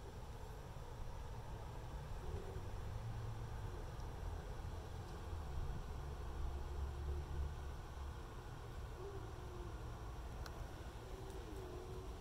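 Quiet outdoor ambience with a steady low rumble, over which a dove coos softly a few times in low, wavering notes.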